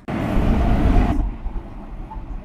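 A loud, sudden burst of rushing noise with a heavy low rumble. About a second in its upper hiss cuts off, leaving a fainter low rumble.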